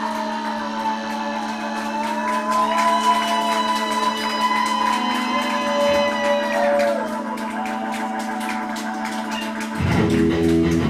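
A live rock band holding a sparse interlude: a steady droning note with slowly wavering, gliding tones above it and no beat. The bass and full band come in just before the end.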